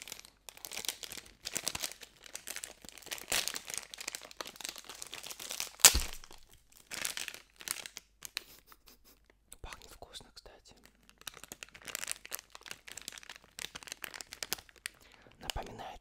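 Thin plastic sausage packet being torn open and crinkled by hand, in irregular crackly spells, with one sharp snap about six seconds in.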